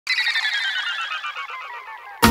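A fast, steadily descending run of short, high, bell-like notes, about a dozen a second, fading out over two seconds: a chime flourish opening the song.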